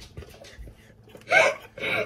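Faint scraping of a spatula inside a stainless-steel mixing bowl, then two short bursts of a voice in the second half.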